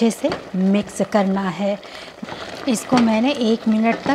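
A woman talking, with wet stirring and bubbling underneath as thick, simmering mustard greens are churned and mashed with a wooden churner in a metal pot.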